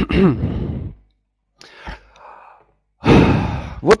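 A man sighing and breathing out into a headset microphone. A voiced sigh with a gliding pitch comes first, then a louder, breathy exhale about three seconds in, just before he speaks again.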